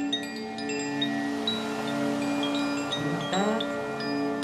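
Meditation music: wind chimes tinkle in scattered high notes over a steady, sustained low drone, with a brief rising sweep a little past three seconds in.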